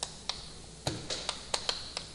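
Chalk on a blackboard as characters are written: an irregular run of about ten sharp taps and short scrapes, one stroke after another.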